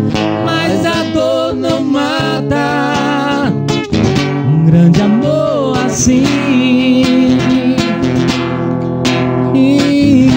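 Live acoustic guitar strummed as accompaniment to male voices singing a romantic ballad, the singing growing louder about four seconds in.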